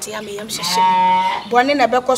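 A woman's voice holding one long drawn-out exclamation at a single steady pitch for about a second, set between stretches of animated speech.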